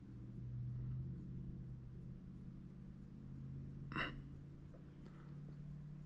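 Faint steady low hum, with one short sharp sound about four seconds in.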